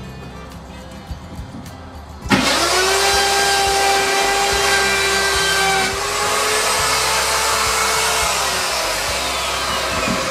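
A power tool starts about two seconds in and runs steadily with a high whine over a loud rush, cutting a shallow channel in the burl aspen lamp base for the cord.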